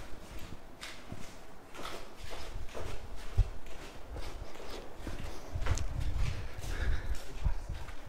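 Flip-flop footsteps going down hard stair treads, slow steady slapping steps about one a second.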